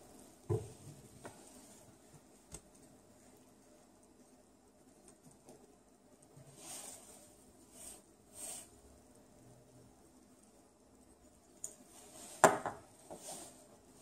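Quiet handling of plastic screw-cap sample bottles on a lab bench: a light click as a cap comes off, a few soft brushing sounds, and a sharper knock or two near the end as a cap is set down on the bench top.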